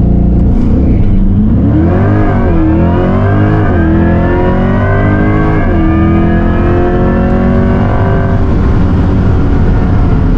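Cabin sound of a 2024 Chevrolet Corvette E-Ray: the LT2 small-block V8 running, blended with an artificial electric-motor whine piped through the cabin speakers. The whine comes in about two seconds in, rises and wavers in pitch for a few seconds, then holds nearly steady over the engine rumble.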